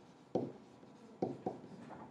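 A pen stylus writing on a tablet surface: four short taps and strokes in two seconds, with quiet between them.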